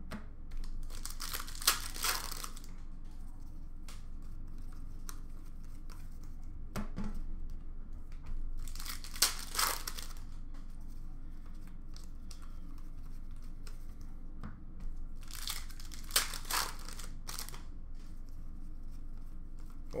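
Hockey card pack wrappers being torn open and crinkled by hand, in three bursts several seconds apart, with a few light clicks between them as cards are handled.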